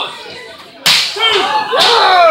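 A wrestler's open-hand strike, one sharp slap landing about a second in, followed by crowd members shouting in reaction.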